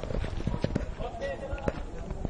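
A 20-shot firework cake firing: an irregular string of sharp pops and bangs, several a second.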